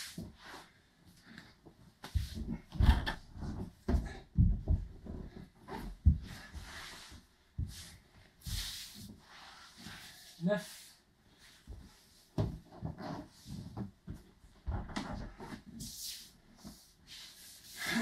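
A body thudding and sliding on a bare wooden floor, with the rustle of a heavy cotton judo gi, during a ground mobility drill: the legs are thrown from side to side and the body rolls over the shoulders. The dull knocks come in irregular clusters.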